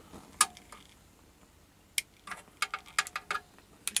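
Sharp clicks of a long-nosed utility lighter's igniter being triggered to light a methylated-spirits stove burner: a single click about half a second in, another at two seconds, then a quick run of about ten clicks.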